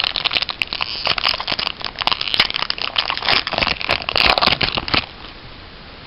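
A Pokémon trading card booster pack's foil wrapper being torn open and crinkled by hand: a dense run of crackling that stops suddenly about five seconds in.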